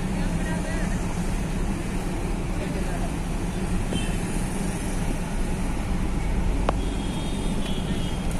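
Vehicle engine running steadily with road noise, heard from inside the moving vehicle, over the general noise of street traffic.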